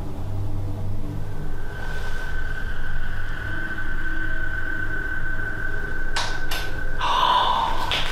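Two sharp knocks in quick succession about six seconds in, the sound of something in the house falling or moving, over a steady low hum.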